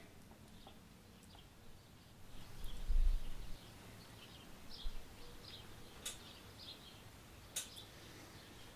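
Faint, scattered bird chirps over quiet room tone, with a dull low bump about three seconds in and two sharp clicks near the end.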